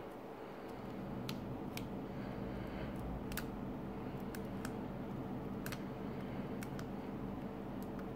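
Scattered small clicks and taps as a plastic coin capsule and its cardboard packaging are handled, about a dozen over several seconds, irregularly spaced, over a steady low hum.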